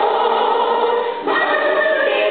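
A stage cast singing together in chorus, holding long notes, with a brief dip and a change to new notes about a second in.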